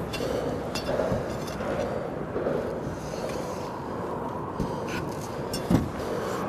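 Steady wind and water noise around an open boat, with a few light knocks and taps, two low thumps coming near the end.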